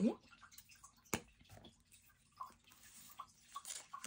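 Faint desk handling sounds as a glue stick is taken from a fabric pouch and uncapped: one sharp click about a second in, then light rustles and scrapes as the stick goes onto paper.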